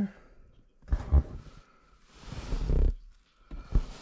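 Shoes and a cardboard box being handled: a couple of short knocks about a second in, a rustle in the middle, and another knock near the end.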